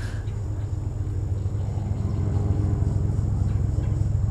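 A steady low motor rumble with a low hum, getting slightly louder.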